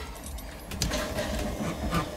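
A boat's electric bilge pump running, switched on from the D.C. panel: a low steady hum with a few light clicks and rattles.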